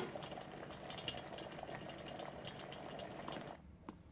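A pot of food simmering on a kitchen stove, a steady soft bubbling and crackling that stops abruptly about three and a half seconds in.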